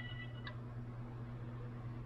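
Steady low electrical hum with faint hiss. A held electronic tone of several pitches stops about half a second in.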